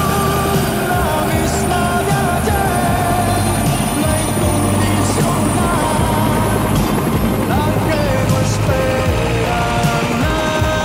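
Instrumental music with a wavering melody line over a steady low rumble that fades out about seven seconds in.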